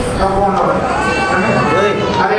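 A man preaching loudly into a handheld microphone, his voice amplified, with some syllables drawn out.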